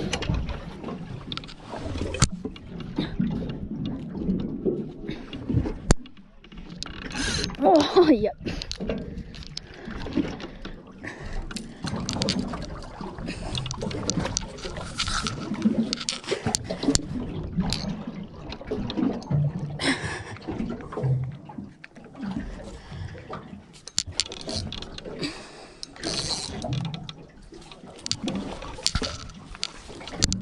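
Busy close-up handling noise while a fishing rod and spinning reel are worked on an aluminium boat: irregular knocks, clicks and rubbing, with muffled voices and wind in between.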